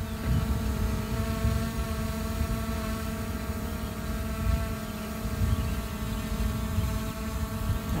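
Steady propeller hum of a DJI Mavic Air 2 quadcopter hovering, its pitch wavering slightly, with wind rumbling on the microphone.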